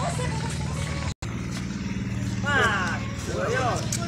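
Voices of bystanders talking in the background over a steady low engine hum; the sound drops out for an instant about a second in.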